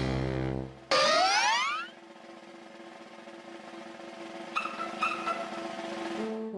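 Cartoon sound effect: a sudden rising boing-like glide about a second in, over orchestral music that then settles into quiet held chords with two short high notes.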